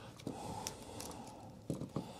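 Faint rustling and a few soft clicks of electrical tape being wrapped around the wire connections in an outlet box.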